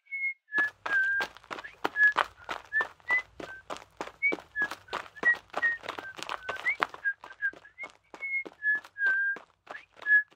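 A person whistling a jaunty tune of short, slightly gliding notes, over quick, even, footstep-like knocks about three a second.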